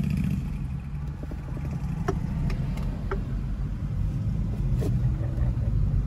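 Car driving in slow, congested traffic: a low, steady rumble of engine and road noise.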